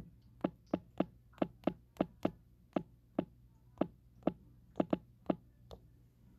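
A series of about fourteen short, sharp taps on a hard surface, irregularly spaced at roughly two to three a second.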